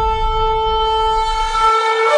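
A long horn note held at a steady pitch over a deep rumble; the rumble cuts off shortly before the end as the note shifts.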